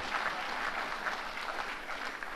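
Audience applauding: many people clapping in a large hall, steady throughout.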